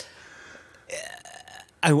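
A pause in conversation with a short non-word vocal sound from a man about a second in, then the first syllable of speech just before the end.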